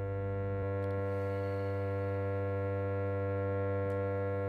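Harmonium holding one low reed note as a steady drone, with no melody over it yet.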